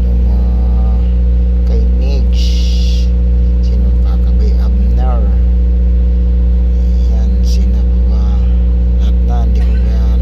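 A steady low motor drone that stays unchanged throughout, with voices talking on and off over it. A short high-pitched sound is heard about two and a half seconds in.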